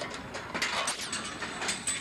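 A rapid, irregular run of sharp metallic clicks and clanks from a mechanism, loudest in the second half.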